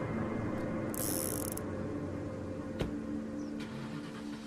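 A revolver being handled: a short metallic rattle of the cylinder about a second in, then a single sharp metallic click a little before three seconds.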